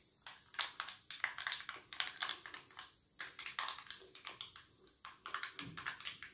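Gas hob's spark igniter clicking in irregular runs of sharp ticks while a burner is being lit.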